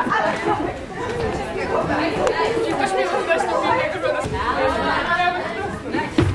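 A group of people chattering at once, several voices overlapping with no single speaker standing out.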